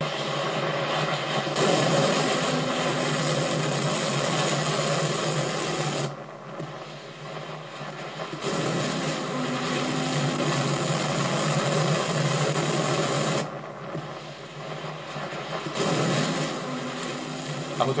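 Rocket-motor roar of a ballistic missile launch on broadcast footage, played through a small screen speaker and re-recorded, so it sounds thin with no deep bass. The noise drops back twice for a second or two as the footage cuts between shots.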